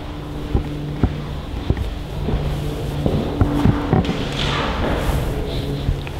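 Footsteps of a person walking, about two steps a second, over a steady low hum.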